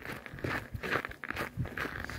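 Footsteps crunching on packed snow at a steady walking pace.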